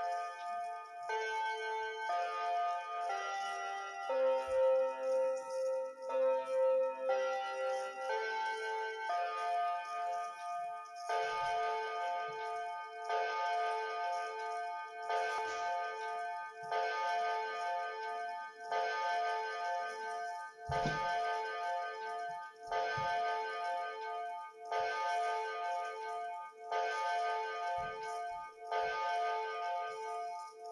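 Seiko quartz pendulum wall clock's electronic chime playing its hourly melody for about ten seconds, then tolling the hour with a hollow dong about every two seconds.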